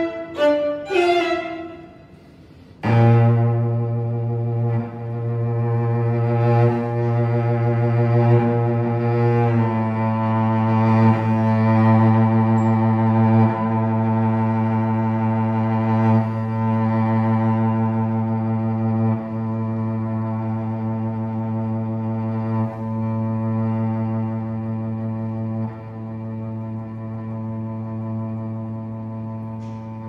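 String quartet: after a brief flurry of notes, a cello settles on a long, low held drone, with the upper strings holding notes above it at first. The violins drop away while the cello sustains, and the sound slowly fades.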